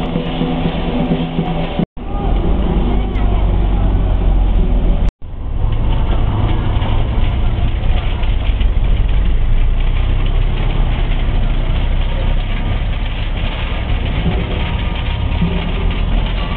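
Loud, dense din of a Teochew gong-and-drum ensemble playing in a street procession, muffled and crowded together in a low-quality recording. The sound cuts out for an instant twice, about two and five seconds in.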